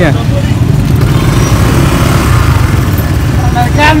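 Outdoor street-market noise: a steady low rumble with a faint hubbub, and a man's voice briefly near the end.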